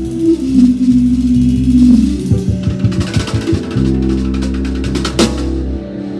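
A live band playing, with a drum kit and held low string notes, busier in the middle. One loud drum-kit hit comes about five seconds in.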